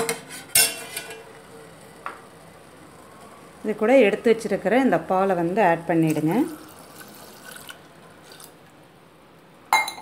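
A steel ladle clinking against the side of a stainless steel pot as liquid is stirred: two sharp clinks in the first second and a faint one about two seconds in. A person talks for a few seconds midway.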